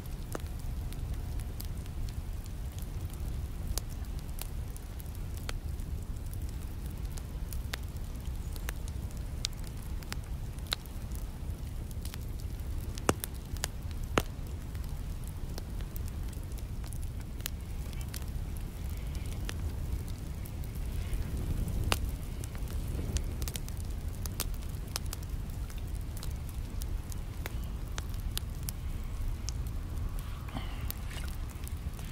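Wood fire crackling in a small folding metal box stove: scattered sharp pops and snaps over a steady low rumble.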